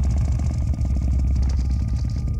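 Loud, steady, deep rumbling drone with a dense crackle and some high hiss, played back over the hall's speakers from footage of a sound installation in which thawing frozen earth falls onto a platform and sets off the sound.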